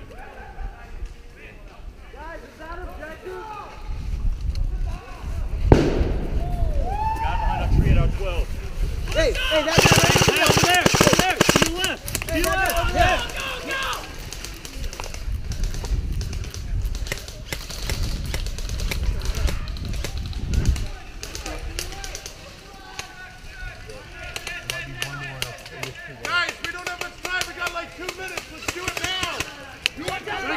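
Unintelligible shouting from players at a distance, over bursts of rapid clicking from airsoft guns firing, densest about ten seconds in. Low rumbles of wind or handling on the microphone come and go.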